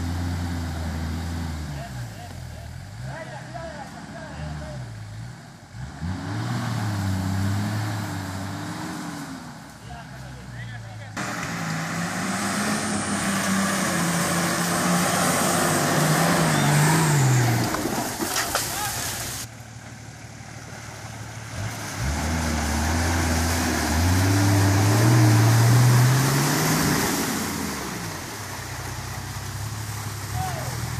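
Nissan Patrol GR Y60 engine revving hard in repeated pushes as the 4x4 works through a deep mud rut, the engine note climbing and falling with each push. A hiss of spinning tyres and mud rises with the loudest revs.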